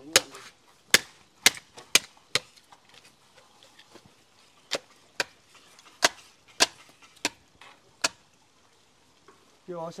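Sharp chopping strokes of a blade on wood, about a dozen at an uneven pace, stopping a little after eight seconds.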